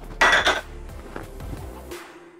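A brief clatter about half a second in, from a plate against the blender jar as the chili peppers are tipped in, with quiet background music playing.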